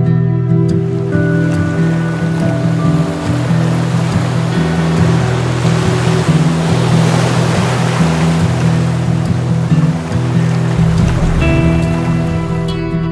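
Gentle background music, guitar-led, over the wash of sea surf. The surf swells to its loudest about midway and fades away near the end.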